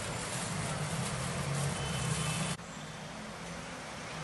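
A motor vehicle's engine running steadily with a low hum under a broad noise; the sound drops abruptly about two and a half seconds in and carries on more quietly.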